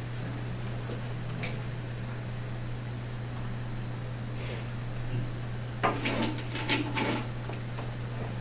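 Clinking and clattering of glassware and containers being handled on a lab bench, a single click early and a burst of clatter near the end, over a steady low room hum.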